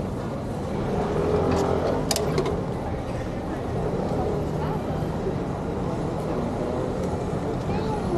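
Busy street ambience: indistinct voices of passers-by over a steady low traffic rumble, with a couple of sharp clicks about two seconds in.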